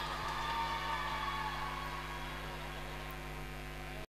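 Stage sound system left running after the band stops: a steady hiss with a low electrical hum, slowly fading out.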